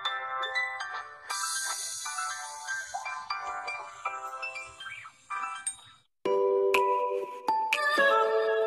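Channel intro music: a tune of steady pitched notes, which cuts out briefly just before six seconds in, then comes back louder.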